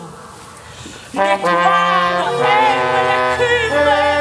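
Contemporary chamber music for an ensemble of seven instruments. After about a second of quiet, the ensemble comes in loudly at about a second in with sustained, layered chords whose notes shift in steps, some held with vibrato.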